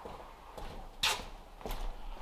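Footsteps crunching on gravel, coming closer: a loud first step about a second in, then more steps about two a second.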